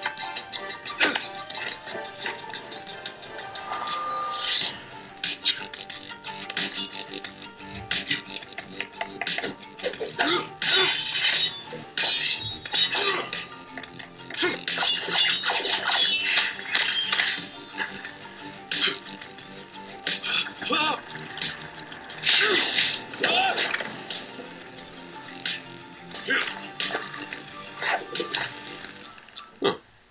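Animated fight-scene soundtrack: music under a rapid, irregular run of sharp clashing and impact hits, some leaving a brief metallic ring, as in a sword fight.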